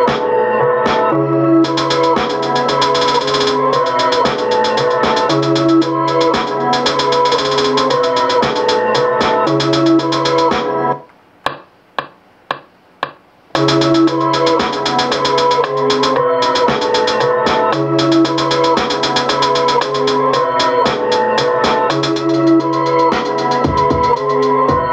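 Beat playing back from an Akai MPC Live: a looped organ-like keyboard sample over a low bass, with a fast ticking rhythm. About eleven seconds in it stops for a couple of seconds, with a few single clicks, then the loop starts again.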